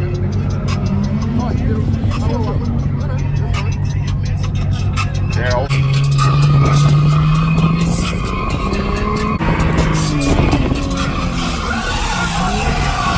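Voices over a steady low drone, then from about six seconds in a drift car's engine revving up with tyre skidding, under background music.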